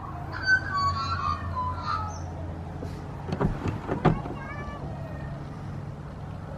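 Muffled, high, wavering vocal sounds from a toddler inside a closed car, heard through the window glass, over a steady low hum. Two sharp knocks come a little past the middle.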